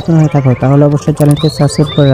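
A man's voice speaking quickly, with a brief high bird whistle in the last second.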